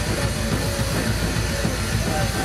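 Live hardcore punk band playing loud and distorted: heavy guitars and drums blur into a dense, steady wall of noise, with a few wavering pitched notes above it.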